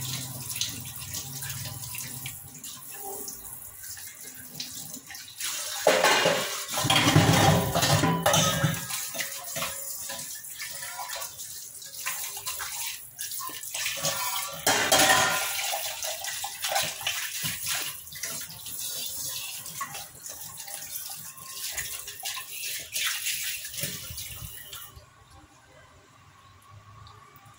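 Kitchen tap running into a stainless steel sink while a plastic chopping board and steel utensils are rinsed by hand, the water splashing louder off them twice, with light knocks of steel vessels. The tap is shut off near the end.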